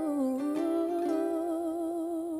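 A woman's singing voice holding one long note with vibrato, dipping slightly in pitch just after the start, over a soft acoustic plucked-string accompaniment.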